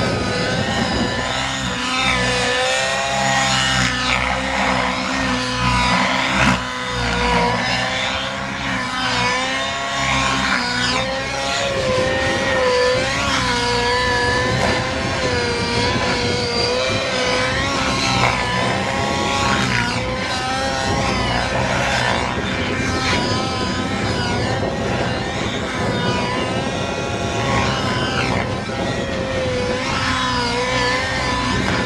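Radio-controlled model helicopter flying aerobatics: its engine and rotor run continuously, the pitch wavering up and down through the manoeuvres.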